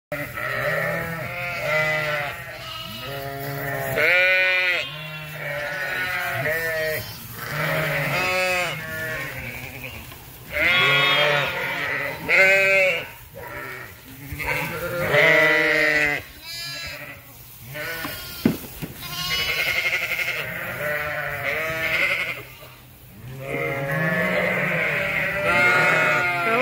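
A flock of sheep, ewes and lambs, bleating, with many calls overlapping in a constant chorus throughout.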